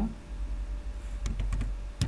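Computer keyboard typing: a few quick keystrokes about a second and a half in, and another near the end.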